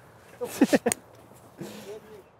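Short laughter: a few quick bursts about half a second in, then a brief voiced sound near the end.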